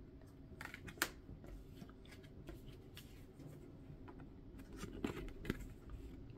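Oracle cards being handled and swapped by hand: faint rustles and slides of card stock with a few light, sharp taps, the clearest about a second in and again around five seconds in.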